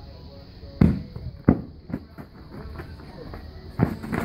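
Inflatable beach ball kicked on a grass lawn: two sharp thumps, the first about a second in and the second half a second later, then another knock near the end.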